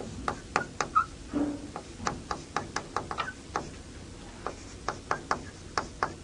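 Chalk writing on a chalkboard: a run of irregular sharp taps and short scratches, about three or four a second, with a brief pause partway through.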